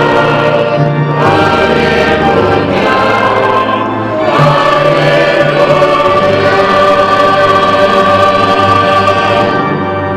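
Church choir singing with accompaniment, the voices holding long notes and moving to a new chord about four seconds in.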